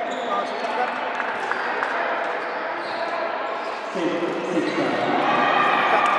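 Sepak takraw play in a large hall: the hollow knock of the woven ball being kicked, over spectators' chatter. The crowd noise swells with shouting voices about four seconds in.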